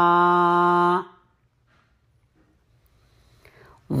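A chanting voice holds the final hummed syllable of 'namaḥ' on one steady pitch, cutting off about a second in. It is followed by about two and a half seconds of near silence, with faint sounds just before the chant resumes at the end.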